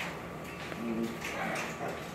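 A young blue-and-gold macaw makes a few short, quiet vocal sounds about a second in.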